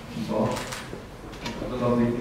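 Speech: a man talking into a handheld microphone.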